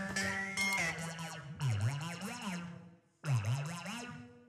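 Two overdubbed synthesizer lines playing solo in short phrases, their pitch swooping down and back up, with a brief gap about three seconds in. An auto-panner swirls them left and right, set slightly out of phase with each other.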